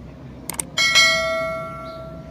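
Subscribe-button animation sound effect: a quick double mouse click about half a second in, then a bright notification bell chime that rings out and fades over about a second.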